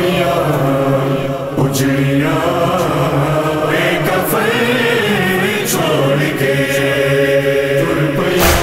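Voices chanting a nohay, an Urdu/Punjabi Shia lament, in long, held notes with a choir-like chorus.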